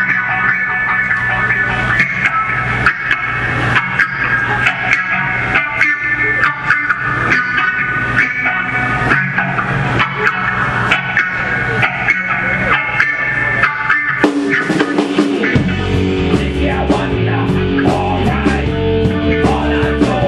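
Live rock band playing an instrumental passage: electric guitar lines over drums. About fifteen seconds in, the low end briefly drops away, and the band then comes back in with a heavier, bass-driven part.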